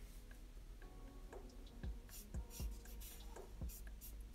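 Felt-tip marker drawing on paper: faint, short scratchy strokes, with a few soft knocks against the drawing surface.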